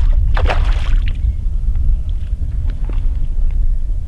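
Wind rumbling steadily on the microphone, with a brief splash about half a second in as a rainbow trout is netted beside a float tube.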